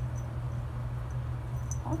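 A steady low hum with a few faint, short high ticks scattered through it.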